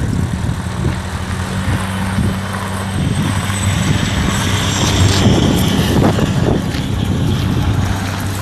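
1992 Mazda MX-5 Miata's 1.6-litre DOHC four-cylinder engine idling steadily, a low even hum under a noisy rustle, with a few crunching knocks around the middle.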